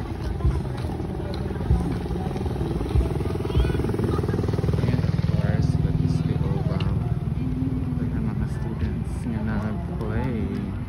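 A vehicle engine passes close by, growing louder to a peak around the middle and then easing off, with people's voices nearby.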